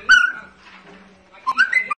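Blue-fronted amazon parrot giving two short whistled calls, one right at the start and a more broken, rising one near the end.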